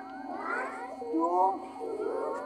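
Group of children shouting together in high voices, two rising calls about a second apart, in the rhythm of counting out exercise repetitions.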